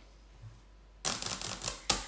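Tarot cards being handled: a quick run of crisp clicks and rustles, starting about a second in and lasting about a second, ending with a sharper click.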